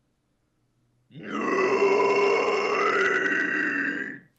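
A young man's low extreme-metal scream: a distorted, rattling low growl from the throat, held steadily for about three seconds and starting about a second in. The coach judges it a clean, low-effort low scream.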